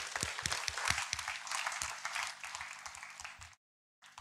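Audience applauding: dense, many-handed clapping that thins a little, then stops abruptly about three and a half seconds in.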